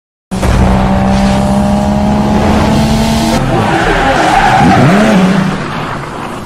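Racing car sound effect: an engine held at a steady high note for about three seconds, then tyres screeching in wavering glides, fading away near the end.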